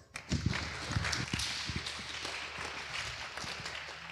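Audience applause, a steady patter of clapping that slowly dies away.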